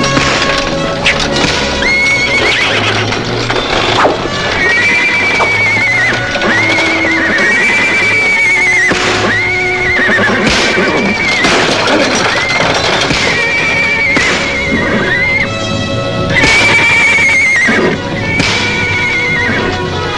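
Dramatic orchestral film score. A wavering high phrase rises and falls over and over, about once every second and a half, over scuffling and knocks; a louder passage comes near the end.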